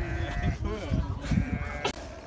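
Sheep bleating, mixed with children's voices, with a sharp click near the end.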